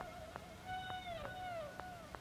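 Soft held instrumental note with a clear pitch and overtones, bending downward in pitch twice, over faint regular ticks about two a second, in a quiet stretch of the tape.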